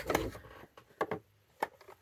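Fabric being handled and set under a sewing machine's presser foot: a soft thump at the start, then a few light clicks. The machine is not stitching.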